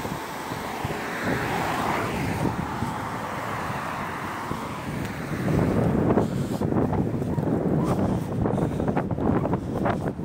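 Wind buffeting the microphone over the hiss of road traffic passing. The buffeting turns heavier and gustier about halfway through.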